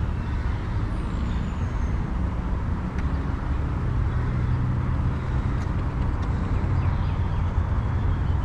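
Steady low rumble of distant city road traffic.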